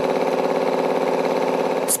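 Electric-motor-driven three-cylinder piston air compressor running steadily, with a fast, even pulse.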